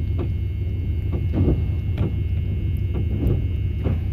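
A steady low rumble throughout, with a few faint light clicks of keys and a small brass cabinet lock being handled as a key is tried in the lock's cylinder.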